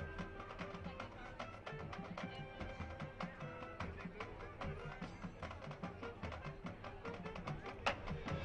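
High school marching band playing its halftime field show: a busy, even beat of drum and block strikes from the percussion under held notes. There is one sharp, loud hit just before the end.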